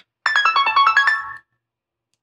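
A short melodic electronic chime: a quick run of pitched notes stepping up and down, like a phone ringtone, lasting about a second.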